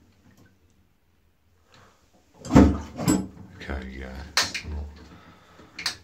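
Dudley Tri-shell high-level cistern flushed by its pull chain: a sudden loud start about two and a half seconds in, then water rushing down into the pan.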